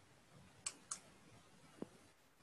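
Near silence broken by three faint clicks: two sharp ones close together about two-thirds of a second in, and a softer, duller one near the end.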